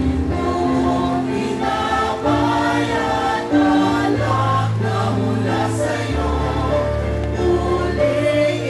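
Church choir singing the offertory hymn, with long held notes over a steady low bass line.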